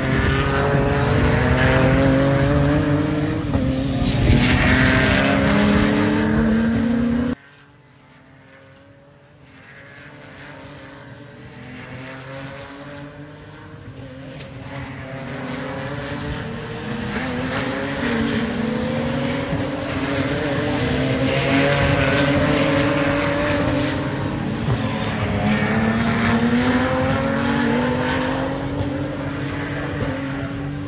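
Ginetta GT4 SuperCup race cars accelerating past, their engines rising in pitch through the gears again and again, recorded on a phone's microphone. The sound drops away suddenly about seven seconds in and then builds back up as more cars come through.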